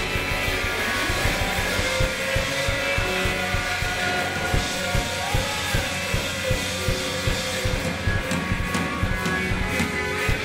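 Live rock band playing an instrumental passage: electric guitars holding sustained lines over bass and a drum kit keeping a steady beat.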